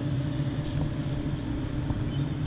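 Steady low motor hum of outdoor urban background, level and unchanging, with a few faint ticks.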